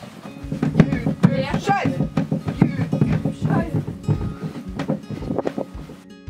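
Young women's voices talking and exclaiming, with edited-in background music coming up under them near the end.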